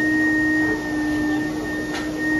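Build-A-Bear stuffing machine running with its foot pedal held down: the blower gives a steady hum with a thin whine over it as it blows fluff through the tube into a plush toy.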